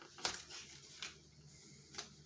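Fingers picking at the flap of a cardboard pencil box, giving a few short sharp clicks and rustles of packaging: a louder one about a quarter second in, then softer ones about a second in and at the end.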